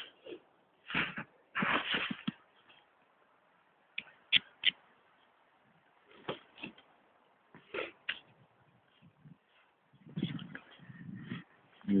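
Irregular crunches and rustles of movement through snowy brush, with a few sharp clicks among them about four seconds in.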